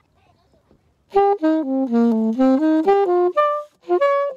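Alto saxophone playing a short melody of quick, separate notes, starting about a second in. The line falls step by step, then climbs back up.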